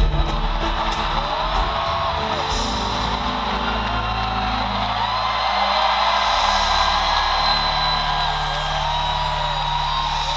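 Live band music at the close of a ballad, guitar and bass holding sustained chords, over an arena crowd cheering and whooping.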